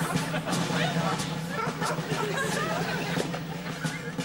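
Sitcom soundtrack played back: jungle sound effects of animal and bird calls over a steady musical drone, with a short laugh at the start.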